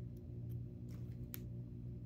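A few faint, sharp clicks from hands handling fashion dolls and their small plastic sunglasses, the clearest a little past halfway, over a steady low room hum.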